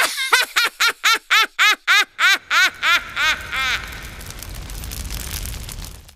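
A high-pitched voice laughing in a long run of "ha" syllables, about four a second, growing weaker over about four seconds. Under the end of the laugh a low rushing noise swells and then fades.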